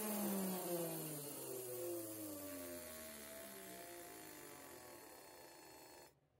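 Small brushed DC motor driven by Raspberry Pi PWM, spinning down as the duty cycle is ramped from about 78% toward zero. Its whine falls steadily in pitch and grows fainter, with a fainter tone rising against it, and cuts off suddenly at the end.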